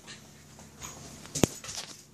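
A dog's faint sounds as it moves about close by, with one sharp click about one and a half seconds in.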